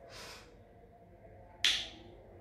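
A pause in a man's speech, mostly quiet: a faint breath at the start, then a single short, sharp mouth noise from the speaker about one and a half seconds in.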